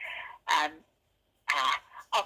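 A woman's voice in a recorded voicemail message played through a phone's speaker, with half a second of dead silence in the middle.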